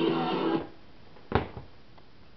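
Guitar music playing from a GE clock radio's speaker, cut off abruptly about a quarter of the way in, followed by a sharp click about two-thirds of the way in.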